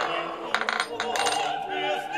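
A coin spinning and clattering on a laser-cut wooden game board, a quick run of clicks about half a second in as it settles into one of the holes. Opera singing plays in the background.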